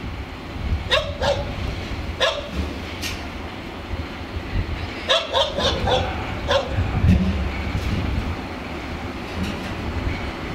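A dog barking in short, sharp barks, single ones in the first few seconds and a quick run of several about halfway through, over the low steady rumble of a 060-DA diesel-electric locomotive's Sulzer 12LDA28 engine as it moves off slowly.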